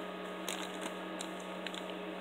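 Faint, scattered crinkles and ticks of a small clear plastic bag being handled, over a low steady hum.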